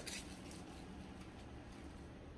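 Quiet room tone: a faint, steady low background with no distinct sound.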